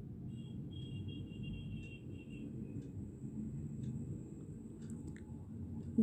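Faint steady low rumble of a covered aluminium pot cooking on a gas stove, with a few faint light clicks.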